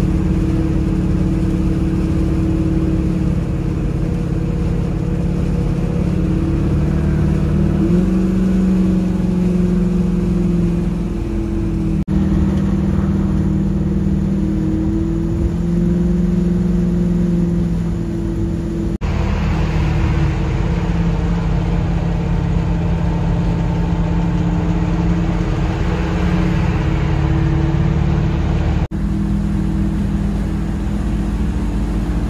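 Old Chevy C10 pickup cruising at highway speed, heard from inside the cab: a steady engine drone over road and wind noise. The engine pitch steps up slightly about eight seconds in, and the sound breaks off abruptly and resumes a few times.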